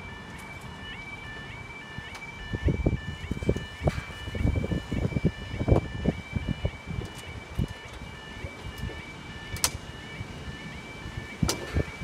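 Railway level crossing audible warning alarm sounding as the barriers lower: a repeating stepped two-tone yodel, about two cycles a second. Irregular low thumps and rumbles come between about two and six seconds in.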